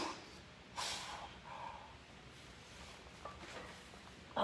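A weightlifter's forceful breathing and strained grunts under a heavy barbell curl. A loud strained exhale tails off at the start, a sharp breath comes about a second in, and a short grunt follows.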